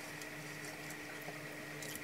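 Quiet room tone: a faint, steady hum with soft, faint mouth sounds of chewing a chicken wing.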